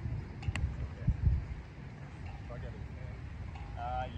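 Wind buffeting the microphone in gusts, strongest about a second in, with faint men's voices talking in the background and one sharp click about half a second in.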